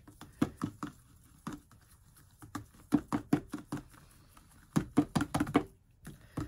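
Runs of quick, light taps and clicks of hard plastic as a small plastic cup of glitter is handled and tapped at the rim of a tumbler, with short quiet gaps between the runs.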